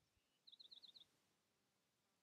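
A faint bird call: a quick run of about six high chirps lasting about half a second, starting about half a second in.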